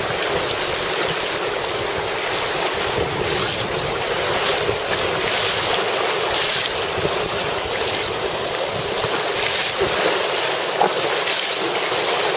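Steady rush of wind buffeting the microphone over the sound of choppy river water from a moving boat.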